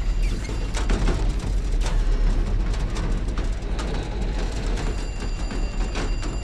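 The burning wreck of an exploded bus: a steady, deep rumble of flames with scattered sharp cracks and pops.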